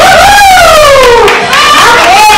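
A high-pitched voice shrieking in excitement over crowd noise: one long call that falls in pitch for about a second and a half.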